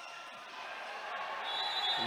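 Low, steady hubbub of an indoor volleyball hall during a rally: crowd murmur and sounds of play echoing in the gym, while the tail of a music jingle fades out early on.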